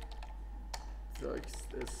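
Typing on a computer keyboard: a few separate keystroke clicks, with a man's voice speaking briefly about midway.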